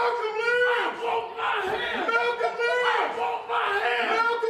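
Men's voices shouting a short phrase over and over in a loud back-and-forth, about one shout every second.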